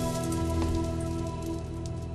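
Background score of held, sustained notes over a low drone, with a light, rain-like patter of fine ticks that slowly fades.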